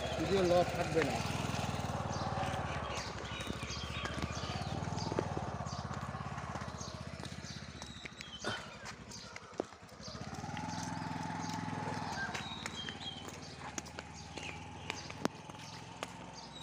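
Indistinct voices over a low steady hum, with scattered sharp clicks.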